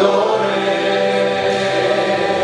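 Church congregation singing a hymn together, the voices holding long, steady notes.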